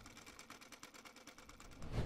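Faint sewing machine stitching in a fast, even run of about a dozen stitches a second.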